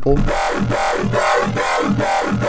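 Wet growl bass patch in the Xfer Serum synthesizer playing a held note. Its resonant high-pass/peak filter is swept by an LFO ramp, which gives it a vowel-like, talking growl that pulses about three times a second.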